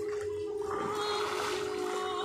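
Pool water splashing and sloshing as a person moves through it, growing louder about two-thirds of a second in, over opera music holding one long note.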